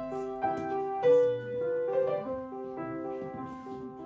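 Grand piano playing the opening melody of a classical piece: a singing line of sustained notes over held lower notes, each note ringing on into the next.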